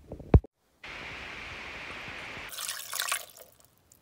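Liquid poured into a pot over chopped vegetables for about a second, a little past the middle. A short, sharp knock comes just after the start.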